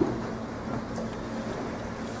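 Quiet room tone with a steady low hum, broken by a short click at the start and a fainter click about a second in.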